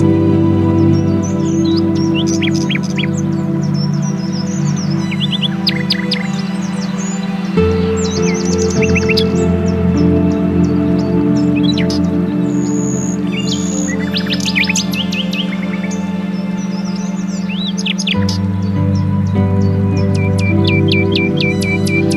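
Ambient meditation music of slow sustained chords that change about a third of the way in and again near the end, with songbirds chirping and twittering over it.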